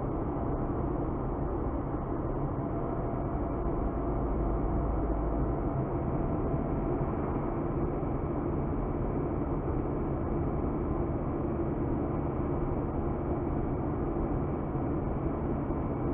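Steady road and engine noise of a moving car, heard from inside the cabin, with a low rumble that swells briefly about four seconds in.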